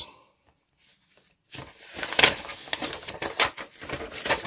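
A folded paper instruction leaflet being unfolded and handled: crisp rustling and crackling of paper, starting about one and a half seconds in and going on in quick irregular bursts.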